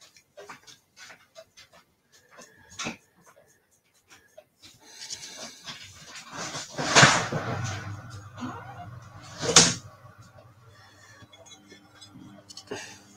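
Washing machine starting up in the background: a rising rush and a steady low hum from about five seconds in, with two louder short bursts around the seventh and tenth seconds. Before that, only faint light taps of handling.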